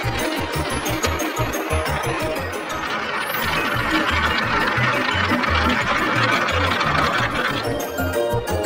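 Background music with a steady beat, over a continuous rattle of marbles rolling along toy marble-run tracks that builds about two seconds in and dies away near the end.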